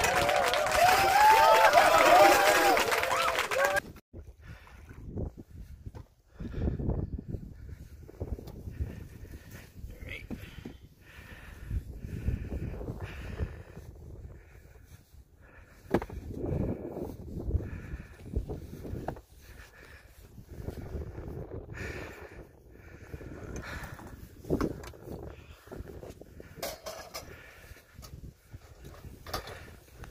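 Loud laughing voices that stop suddenly after a few seconds. Then comes quieter, irregular crunching of footsteps on snow.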